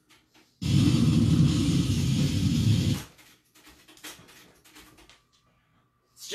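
A burst of heavy, distorted death metal from a demo tape plays loudly for about two and a half seconds, then cuts off suddenly. Faint clicks of the tape deck being handled come before and after it.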